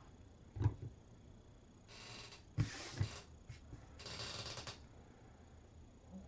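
A knock about half a second in, then the rustle and crinkle of a paper cone and lace trim being handled and pressed down, in three short bursts with a couple of light taps.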